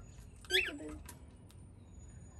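A single short word in a high voice about half a second in, followed by a few faint clicks.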